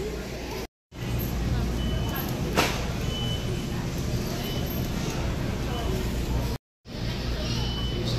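Large store ambience: a steady low hum with indistinct background voices and a few faint, short electronic beeps. Twice the sound drops out to silence for a split second, about a second in and again near the end.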